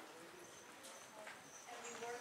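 Near silence with faint, distant speech; a voice becomes clearer just before the end.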